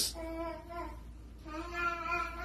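A husky talking back in long, drawn-out whining howls: one held note just after the start and another from about three-quarters of the way in.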